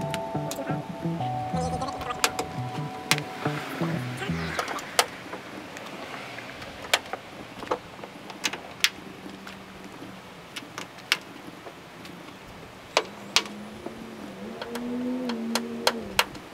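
Background music for the first few seconds, then a dozen or so scattered sharp clicks, about one every second or so, from plastic push-pin trim clips snapping into the trunk lid as the felt liner is pressed back into place.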